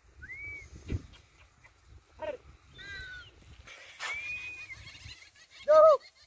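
A few brief, high, rising-and-falling animal calls scattered through the quiet, with a louder short call just before the end.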